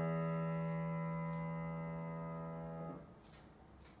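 Final chord on a Yamaha grand piano, held and slowly fading, then damped off about three seconds in, leaving only faint room noise. The player calls the piano out of tune.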